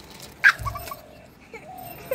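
A young child's voice: a loud sharp cry about half a second in, then a few short high-pitched squeals.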